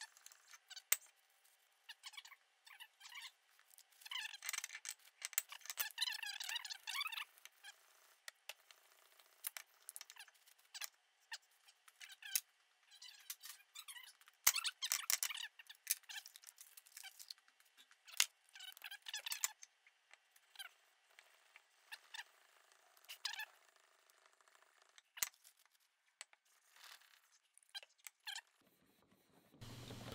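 Steel vise jaw slid back and forth by hand on wet 600-grit wet/dry sandpaper on a granite surface plate: faint, irregular strokes of scraping with squeaks, and a few sharp clicks.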